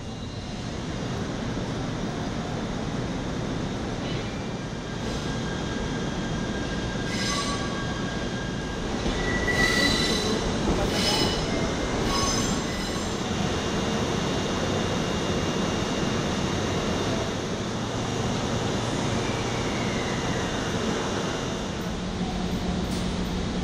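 Mani 50 baggage car behind an EF64 electric locomotive rolling slowly through a station, a steady rumble with high-pitched wheel and brake squeals, loudest about ten seconds in, and a falling squeal near the end.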